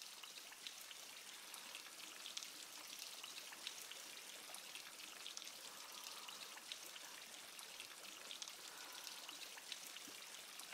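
Faint water sounds: a steady patter of dripping and trickling water, with many small scattered ticks.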